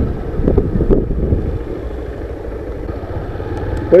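Engine of a small Honda street motorcycle running steadily while it is ridden slowly at low speed, a low rumble with a few light clicks.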